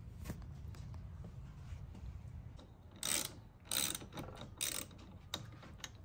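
Ratchet wrench clicking in three short bursts while a new car battery is bolted in.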